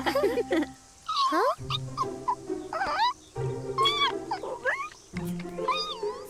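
Cartoon chipmunk giving a string of short, squeaky chirps and chatters that slide up and down in pitch, over light background music.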